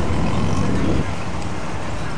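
Steady background noise with a low rumble, like room and street ambience, a little louder in the first second and then even. No music or clear speech.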